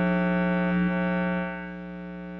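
Steady electronic buzz from a fault in a broadcast audio feed: a constant pitched drone with many overtones where the speech has dropped out. It drops in level about one and a half seconds in.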